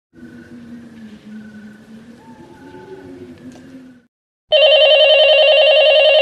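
A telephone ringing: a loud, steady electronic trill that starts about halfway through and lasts about two seconds. Before it come a few seconds of faint low humming with a few thin tones.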